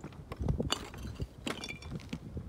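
Footsteps on dry, rocky forest ground: a few irregular steps with small clicks and scuffs.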